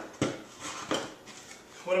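Two sharp knocks close together near the start, then lighter handling noises: a screen's aluminium frame clacking against the wooden strips of a plywood drying rack.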